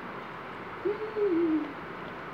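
One low, hum-like vocal sound, a little under a second long, that starts almost a second in and falls slightly in pitch.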